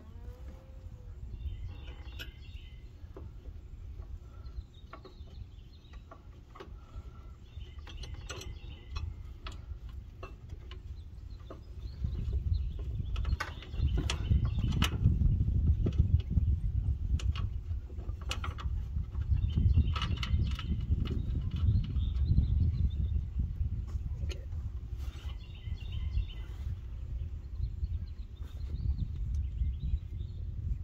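Scattered light metallic clicks and knocks from hands fitting parts around a riding mower's deck belt pulleys and bracket, over a low rumble that grows louder about halfway through.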